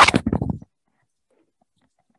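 A man's voice trailing off in the first moment, then near silence for the rest.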